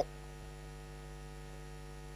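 Steady electrical mains hum: a low, even drone with a stack of steady overtones.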